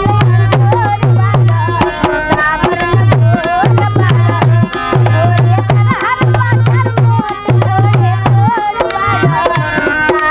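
A woman singing a Bhojpuri folk song over a harmonium's held chords, with a dholak drum keeping a steady rhythm of deep bass strokes and sharp treble slaps.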